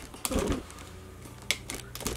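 Handling noise: a dull knock about a quarter second in, then two sharp clicks about a second later, as things are moved around an open drawer of makeup palettes.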